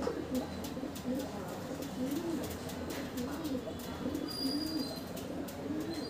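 A pigeon cooing over and over, a run of low, soft, rising-and-falling coos, with a few faint clicks.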